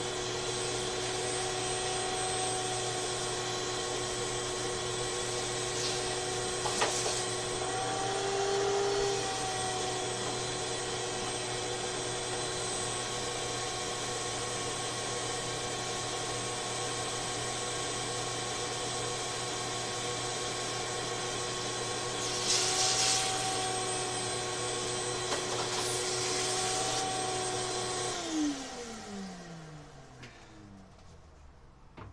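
Shop vacuum running steadily while cleaning out the dryer base, its pitch rising briefly about eight seconds in. About two seconds before the end it is switched off, and the motor winds down in a falling whine.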